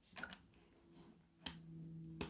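Faint clicks of plastic Lego bricks being handled and pressed onto a model, with one sharper click about one and a half seconds in, over a faint low hum.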